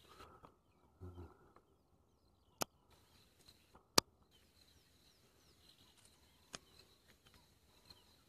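Quiet bush with faint, short, high bird chirps, broken by three sharp clicks, the loudest about four seconds in.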